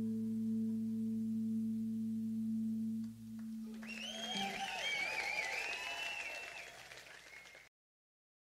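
A live rock band's final chord rings out and stops about three seconds in. Audience cheering and applause follow, fading and then cutting off suddenly near the end.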